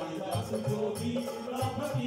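Live Indian devotional folk music: a hand drum beating a steady rhythm under a held melody from a wind instrument.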